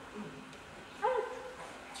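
A man's voice speaking one short word about a second in, between pauses. The word is most likely the "Good" of "Good teacher".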